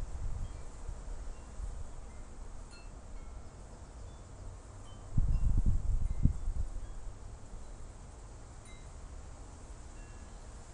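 Chimes tinkling lightly, with short high notes scattered irregularly. A louder low rumble swells for about two seconds around the middle.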